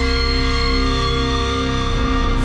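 Background music of sustained, held notes, steady in level.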